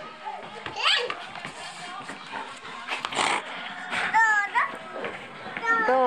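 A one-year-old's voice: short, high-pitched squeals and babbling calls, one rising sharply about a second in and two more in the second half, with a brief noisy burst near the middle.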